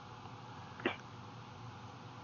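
A quiet pause in the conversation with a faint steady line hiss, broken a little under a second in by one very brief vocal noise from a person.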